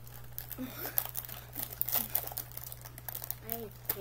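A plastic seaweed-snack packet crinkling as it is handled and opened: a rapid, irregular run of crackles.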